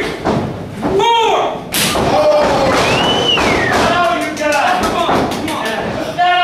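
An impact in a wrestling ring about two seconds in, with a shout just before it and voices after. Near the end comes a run of quick sharp smacks.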